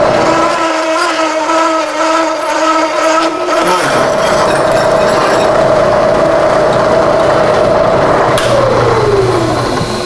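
1970s Bridgeport milling machine turning a bimetal hole saw through 3/8-inch steel plate, a steady machine hum with cutting noise. A little after eight seconds in, the tone falls steadily as the spindle winds down.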